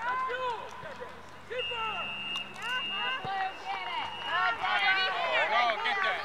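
Distant shouting voices of players and spectators across an open soccer field, with a faint steady high tone running through the middle few seconds.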